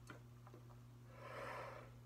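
A trumpeter's faint breath in, about halfway through, taken with the mouthpiece at the lips just before playing. It sits over near-silent room tone with a low steady hum.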